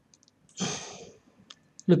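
A few faint computer mouse clicks and a breathy exhale, with speech starting just at the end.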